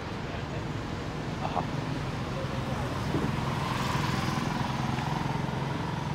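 A road vehicle's engine passing nearby: a steady low hum that grows louder to a peak about two thirds of the way through, then eases off.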